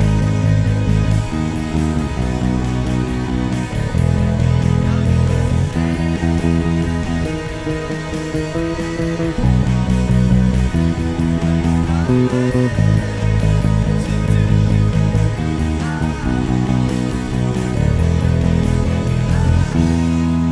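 Sterling StingRay electric bass guitar playing a rock bass line of repeated low notes along with a full band recording of drums and electric guitars, with a steady beat throughout.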